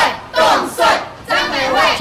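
A group of campaign supporters shouting a rallying chant in unison, fists raised: loud, short shouted syllables in a steady rhythm.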